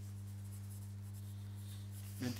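Low, steady electrical hum from the meeting's microphone and sound system, with faint rustling of paper.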